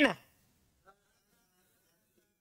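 A man's voice finishing a word just at the start, then near silence with only one faint tick about a second in.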